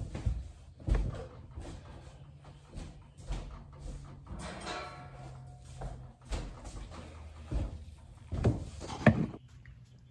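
Heavy cast-iron Bridgeport milling-machine head being set down and rolled onto its side on wooden blocks on a workbench: irregular knocks and thumps as it shifts, the loudest about a second in and near the end, with a short creak about halfway through.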